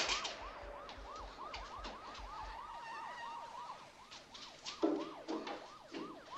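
Police siren on a fast yelp, rising and falling about three times a second, fairly faint. A sharp click comes right at the start, and two dull thuds about five seconds in are the loudest sounds.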